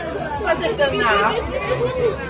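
Several people talking at once: lively chatter of overlapping voices during greetings.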